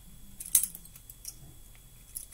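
Balisong trainer comb being flipped by hand: its handles swing on their bearing pivots and clack against each other, a cluster of sharp metallic clicks about half a second in, then a few lighter ticks.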